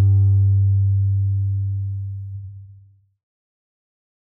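The song's final low note rings out as a steady, deep tone and fades away, dying out about three seconds in.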